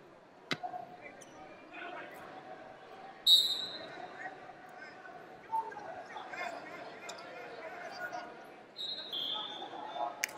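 Background voices fill a large hall while wrestling shoes squeak on the mat: a loud, short high squeak about three seconds in and two more near the end. A sharp slap comes about half a second in as the wrestlers close to hand-fight.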